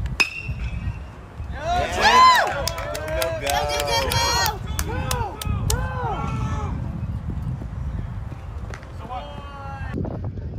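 A baseball bat hits a pitched ball with a single sharp crack and a brief ring. About a second and a half later, spectators yell and cheer for several seconds, with a few claps among the shouts, and another shout comes near the end.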